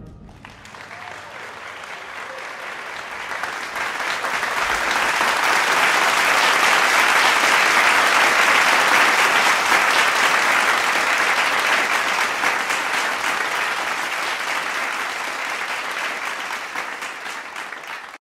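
Audience applauding. The clapping swells over the first several seconds and then slowly eases off toward the end.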